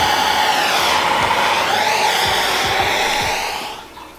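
Handheld gas torch burning with a steady rushing roar, as it would when lighting the charcoal in a Big Green Egg kamado grill. It starts suddenly and fades out shortly before the end.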